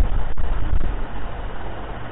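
Steady hiss and low rumble of background noise, broken by a split-second dropout about a third of a second in.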